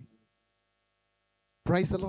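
A pause in a man's speech over a handheld microphone, leaving only a faint steady electrical hum; his voice breaks off at the start and resumes shortly before the end.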